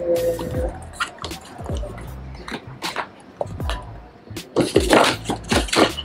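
Background music with a steady bass line under handling sounds: short clicks and knocks from a cardboard sunglasses box being opened, then a louder rustling, scraping burst about five seconds in as the leather sunglasses pouch is drawn out of it.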